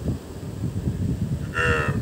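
A cartoon character's voice giving a low, drawn-out moo-like "mmm", with a short, clearer pitched voiced note about one and a half seconds in.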